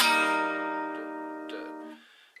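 A single chord strummed once on a steel-string acoustic guitar, ringing and slowly dying away, then damped by hand just before the end.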